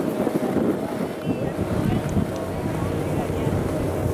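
Skis sliding over packed snow while skiing downhill, with wind rushing on the microphone.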